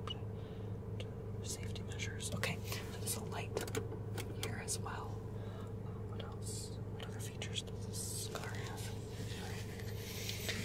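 Soft whispered talk with small mouth clicks and breaths, over a steady low hum inside a car cabin.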